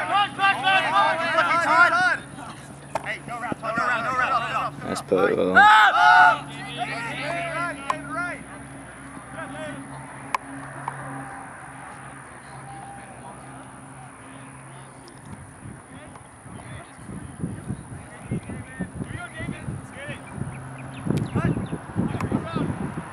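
Players' voices shouting and calling across an ultimate frisbee field, with words that can't be made out. The shouts are loudest about five to six seconds in, then the field goes quieter with only a low hum.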